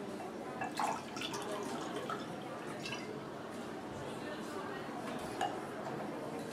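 A drink being poured from a bottle into a glass, dripping and trickling, with a few short clinks.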